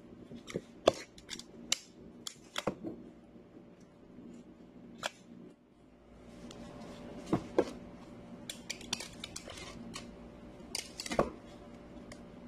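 Gloved hands stuffing a hollowed-out eggplant with rice filling over a plastic tub: scattered clicks, knocks and soft handling noises. A steady low hum runs underneath.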